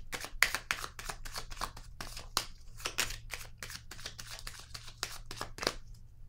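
Tarot cards being shuffled by hand: a quick, irregular run of papery flicks and slaps, several a second, stopping just before the end.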